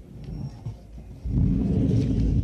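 Low rumbling handling noise as the table microphones are grabbed and shifted, growing much louder a little past halfway through.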